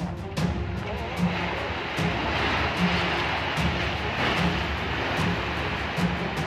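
Background music with a steady beat over a rushing roar that swells from about two seconds in: a three-storey building collapsing.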